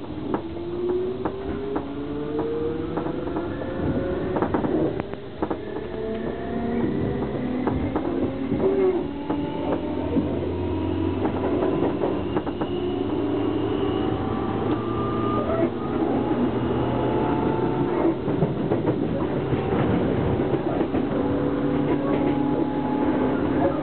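Traction motors of a JR East 205 series electric train, heard from inside the car as it accelerates away from a station: a whine that rises steadily in pitch for the first dozen or so seconds, then holds level, with wheels clicking over rail joints. This ex-Yamanote Line set has an acceleration sound unlike other Yokohama Line 205 series trains, close to that of the Keiyo Line 201 series.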